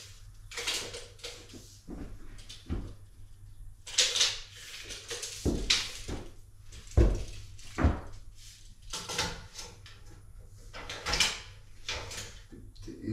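Irregular knocks, taps and scrapes from handling a wooden trim board and a tape measure at a miter saw, with a dozen or so separate sounds and the sharpest thumps about seven and eight seconds in. The saw is not running.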